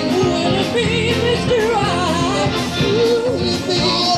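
Live soul-blues band playing, with a wordless lead line that bends and wavers in pitch over the steady band.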